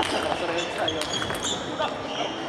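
Table tennis rally: the ball is struck by the bats and bounces on the table, giving a few sharp clicks, the loudest about a second in. One of the bats is a penhold blade with short pimples-out rubber.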